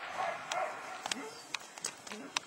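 A five-and-a-half-month-old puppy making short vocal sounds while gripping and tugging a bite rag during bite work, with a few sharp clicks in between.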